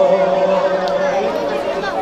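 Crowd of mourners' voices, many people talking and calling at once. A noha reciter's held sung note carries over from the previous line and fades about half a second in.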